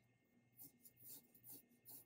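Faint scratching of a pencil drawing on paper, in a series of short strokes about every half second.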